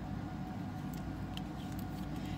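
Steady low background rumble, with a few faint light clicks and taps of tarot cards being handled and drawn from the deck.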